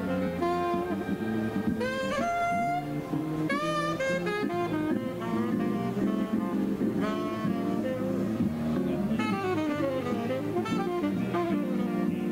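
Tenor saxophone playing a jazz line of changing notes live, with lower accompanying instruments sounding beneath it.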